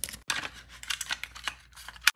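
Hands handling a Samsung 2.5-inch SSD and laptop parts: a quick run of irregular small clicks and rustles.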